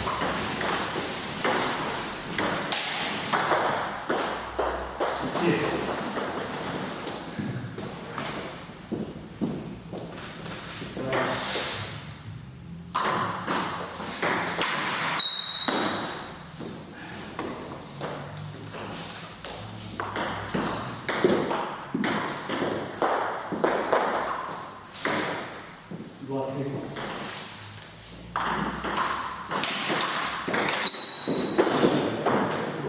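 Table tennis rallies: the ball clicking back and forth off the rackets and table in quick runs of strikes, with a short break about twelve seconds in.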